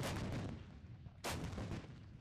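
Self-propelled howitzers firing: two heavy blasts, one at the start and a second about a second and a quarter later, each dying away in a rumble.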